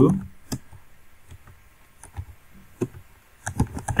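Typing on a computer keyboard: a handful of separate keystrokes, spaced out rather than in a fast run.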